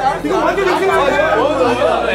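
Several people talking over one another: overlapping chatter from a group.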